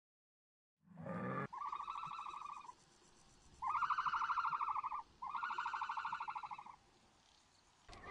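Three trilled animal calls, each about a second and a half long and made of fast pulses, with short gaps between them. A brief noise comes just before the first call.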